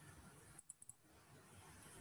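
Near silence: faint room tone, with a quick run of about four faint clicks a little over half a second in.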